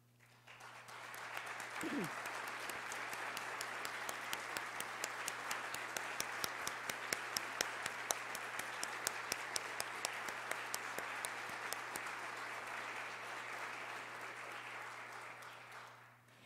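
Audience applause in a large room: it swells up about a second in, holds steady with many sharp individual claps, and dies away near the end.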